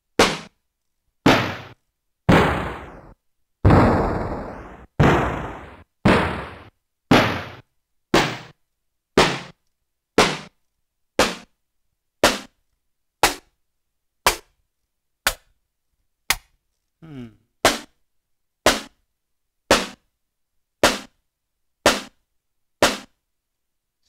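A single sampled drum hit from an acoustic drum kit on an Akai MPC One, triggered about once a second, the hits around the first few seconds ringing out longer than the rest. Its pitch is being stepped down in semitones and still sounds a little high.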